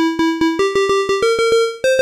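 Single-operator square-wave tone from the Phasemaker FM synthesizer app, a repeated note at about five attacks a second. Its pitch steps up three times as the operator's coarse ratio is turned up to 8, tuning a dub siren sound to the right pitch.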